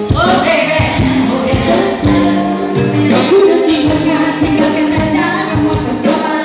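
A live pop song: a group of singers singing together into microphones over a band with a steady drum beat.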